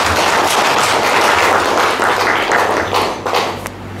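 A room full of people applauding, dying down near the end.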